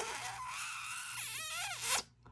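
A stiff paper sticker sheet of washi strips being handled and rubbed, a steady papery hiss with a brief squeaky warble in its second half that cuts off suddenly.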